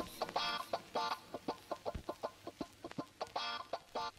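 Campfire of sticks and logs crackling, with many irregular sharp pops. Over it come three short pitched calls, at about half a second, a second, and three and a half seconds in.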